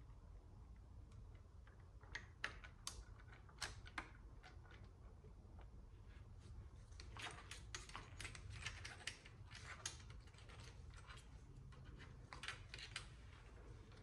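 Faint, irregular light clicks and taps of gloved hands handling the metal valve body of an automatic transmission, with the clicks coming thicker about halfway through.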